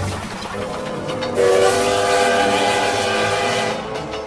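A train whistle sounding steadily for about two and a half seconds, starting about one and a half seconds in, over running-train noise.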